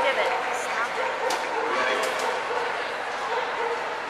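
A dog yipping and barking in many short, high calls, over a background of voices.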